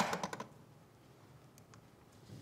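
Keys clicking on a lectern computer: a quick run of clicks in the first half second, then two faint clicks about a second and a half in, over quiet room tone.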